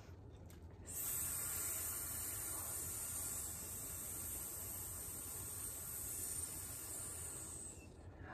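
A long hiss made with the mouth as a yoga "snake sound", held on one breath; it starts about a second in and tapers off near the end.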